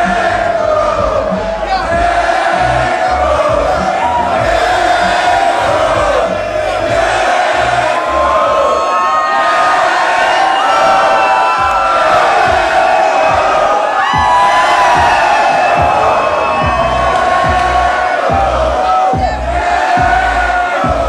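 Large club crowd shouting and cheering, many voices at once, over bass-heavy music from the PA.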